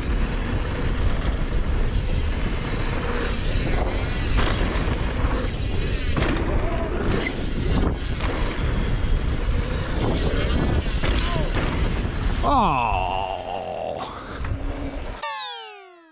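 Rushing wind on a helmet-mounted action camera and tyre rumble from a mountain bike rolling fast over hardpacked dirt, with faint voices. Near the end a falling tone is heard, then the sound cuts out abruptly with a few falling sweeps.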